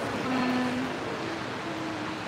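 Steady background hum of a large indoor shopping-mall hall, with faint voices in the distance.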